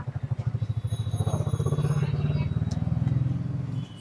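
Motorcycle engine running close by, a rapid, steady low putter that grows a little louder and then stops just before the end.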